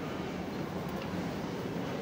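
Steady background noise of a large indoor market hall, with a low even hum and no distinct event.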